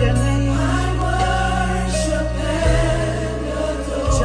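Recorded gospel song playing: sung lead and choir vocals with vibrato over sustained bass notes, the bass changing pitch near the end.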